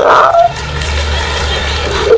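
A voice trails off in the first half second, then a steady low rumble sets in and holds, with a faint hiss above it.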